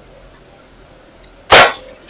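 A single loud bang about one and a half seconds in, dying away quickly, over the steady hiss of a security camera's microphone.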